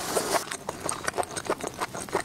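Close-miked chewing of a mouthful of seafood with the lips closed: a quick run of wet mouth clicks and smacks, several a second.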